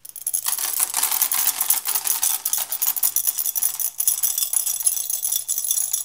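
A long strand of beads self-siphoning out of a glass beaker: a continuous, rapid clatter of beads running over the rim and piling up on the table.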